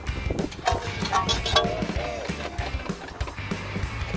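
Jacked-up front wheel of a Toyota being turned by hand, scraping and clicking irregularly with a few short squeaks. The cause is a small stone trapped at the wheel, which sets off the noise when the wheel rotates.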